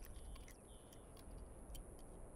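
Faint background ambience: a steady high-pitched thin whine with scattered light ticks over a low rumble.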